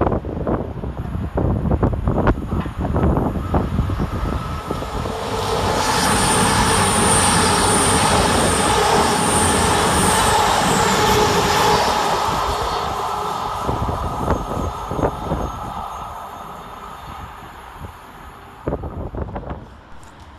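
A pair of CrossCountry Voyager diesel-electric multiple units passing through the station. Engine and wheel noise grows into a loud, steady rush with a high whine for several seconds, then fades as the train runs away. Wind buffets the microphone near the start.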